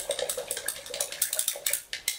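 A metal spoon stirring in a glass beaker, clinking quickly and irregularly against the glass as it mixes a saturated borax solution.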